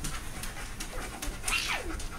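A small pet dog panting in short, quick breaths, with a brief sound sliding down in pitch near the end.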